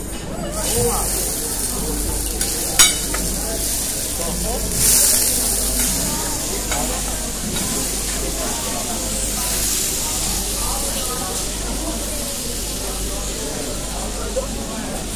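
Meat stock sizzling steadily on a very hot serving plate, a hiss that sets in about half a second in and swells briefly around five seconds. A single sharp clink near three seconds.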